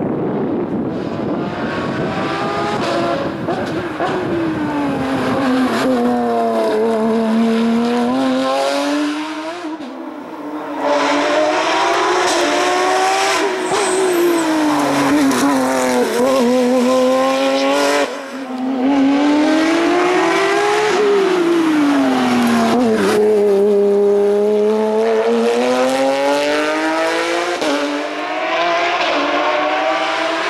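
Porsche 911 race car's flat-six engine driven hard, its pitch climbing and falling back again and again as it revs up through the gears and drops back for the bends. The sound dips briefly twice, about a third and about three fifths of the way through.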